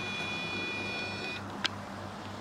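A camera lens's power-zoom motor whining steadily for about a second and a half as the lens zooms in, with a sharp click just before it starts and another shortly after it stops.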